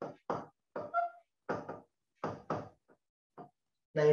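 A quick, irregular series of about ten short knocks or taps.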